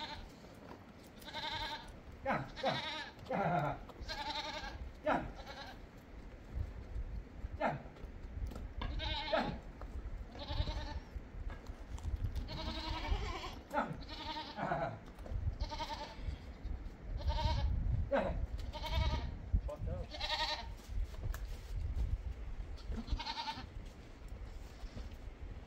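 Goats bleating again and again, a short call every second or two.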